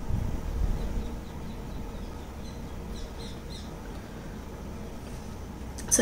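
A bird chirping faintly a few times around the middle, over a low room rumble.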